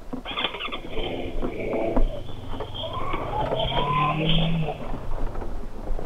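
Bristol Venturi 500 motorcycle engine running at low revs as the bike rolls slowly over a rough, rutted dirt track, with scattered knocks and rattles from the bumps. The engine note rises a little about halfway through.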